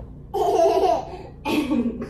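A toddler laughing in two short bursts, about a second apart.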